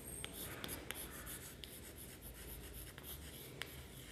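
Chalk writing on a chalkboard: faint scratching strokes with scattered light taps of the chalk as letters are written.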